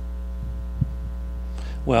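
Steady electrical mains hum, with a single soft thump a little before a second in; a man starts speaking near the end.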